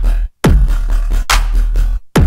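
Riddim dubstep bass patch from the Serum wavetable synth playing about three heavy, sustained hits with a deep sub underneath, each hit opening with a quick falling pitch sweep. Its tone is metallic and shimmery from a short linked stereo delay and a reverb filter in the synth's effects chain.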